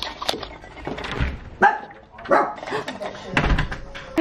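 Small dog barking repeatedly in short, sharp barks, with some higher whining yips among them.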